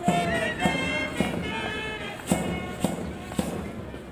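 March music for a parade march-past, with a steady drum beat a little under two beats a second and a melody line over it early on.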